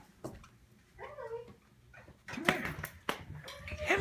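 A crawling baby's short high-pitched babbling call about a second in and another near the end, with light taps of hands on a hardwood floor.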